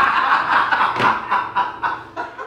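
A group of men laughing together, the laughter breaking into short bursts that fade out.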